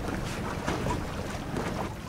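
Wind buffeting the microphone, with choppy sea water moving against the hull of a drifting boat.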